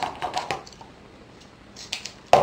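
A few light clicks and taps in the first half second and one more near the end: scissors and a roll of foam tape being handled and set down on a craft cutting mat.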